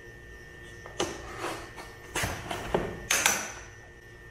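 A cardboard presentation box being cut open with a metal utility knife and handled on a granite countertop: a few short knocks and scrapes, then a sharper clack with a brief ring just after three seconds in, as the knife is set down on the stone.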